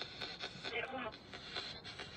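Spirit box sweeping through radio frequencies: faint, choppy static broken into short irregular snatches, with brief speech-like fragments.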